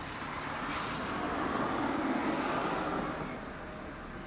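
A road vehicle passing by on the street, its noise swelling and fading over about two seconds.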